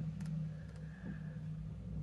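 A steady low hum, with a few faint light taps of a marker pen's nib on paper.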